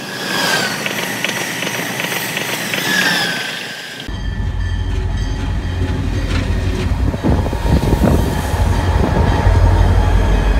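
An Amtrak Acela Express high-speed electric trainset passing at speed, with rapid rail clicks and whining tones that glide in pitch. About four seconds in the sound cuts abruptly to CSX diesel freight locomotives rolling past close by, a deep steady engine rumble that grows a little louder toward the end.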